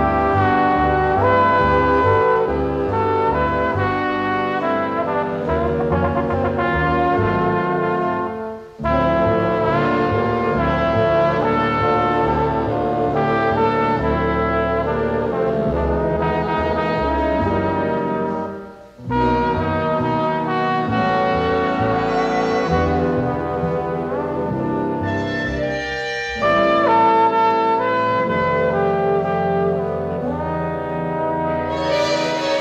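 Big-band jazz brass from a 1952 recording: a first trombone is featured over sustained brass-section chords. The music pauses briefly twice, about nine and nineteen seconds in, and swells louder near the end.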